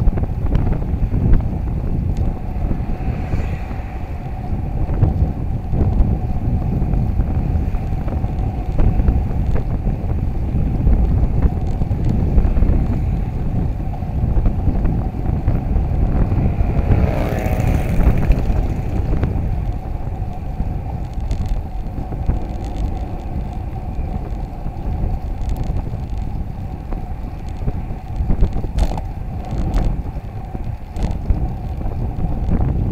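Wind buffeting the microphone of a camera on a moving road bicycle, a continuous heavy low rumble mixed with road noise. A motor vehicle passes once, about halfway through.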